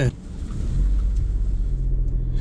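Car engine and road rumble heard from inside the cabin of a VW T-Roc as it pulls away, growing louder over the first second and then holding steady with a low hum.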